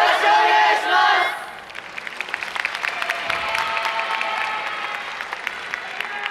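A group of dancers shouting a greeting together, loud for about a second and a half, then audience applause with cheering.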